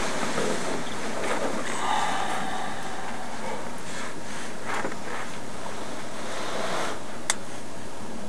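Steady hiss of room tone on a recording, with a few faint brief noises and one sharp click about seven seconds in.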